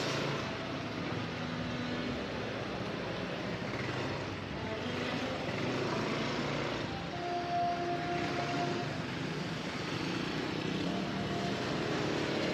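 Steady road noise of a motor scooter being ridden in traffic: engine drone and wind rush on the camera. A brief steady tone sounds about seven seconds in and lasts a couple of seconds.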